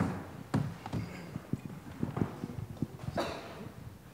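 Irregular knocks, taps and clicks of a handheld microphone and a laptop being handled, some in quick runs, with a short murmur of voices.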